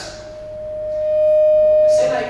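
Microphone feedback through the hall's PA: a single steady howling tone that swells over about a second and a half.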